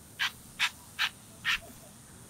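Salt shaken from a bottle onto a raw T-bone steak: four short, sandy shakes at about two and a half a second.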